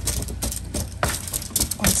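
Gloved hands tossing oiled, seasoned asparagus spears on a foil-lined baking sheet: the aluminium foil crinkles and rustles in a quick run of irregular crackles.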